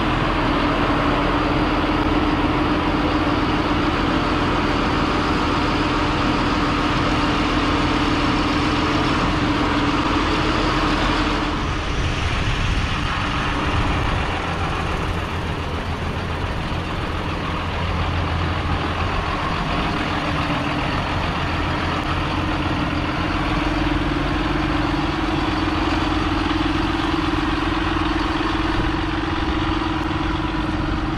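John Deere tractor's six-cylinder diesel engine running steadily while working the front loader, with the uneven, croaking note of its failing regenerated injectors over-fuelling since the engine's power was raised.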